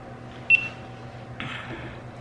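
A single short, high electronic beep from a GoPro Hero5 on a Karma Grip as its button is pressed, followed about a second later by a brief half-second noise. The camera keeps answering in photo mode instead of recording video, a fault the owner traces to outdated Hero5 firmware that keeps the grip from recognising the camera.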